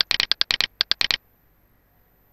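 A quick run of about a dozen sharp computer mouse clicks, many in press-and-release pairs, over the first second or so, then stopping.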